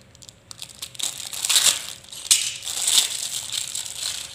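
Thin clear plastic bag crinkling as it is pulled open by hand, in a few irregular bursts of rustling.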